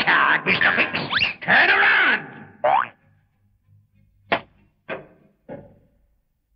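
Cartoon sound effects: a quick run of boings and sliding whistle-like pitch glides over about two seconds. A shorter falling glide follows, then three sharp knocks about half a second apart, each fainter than the one before.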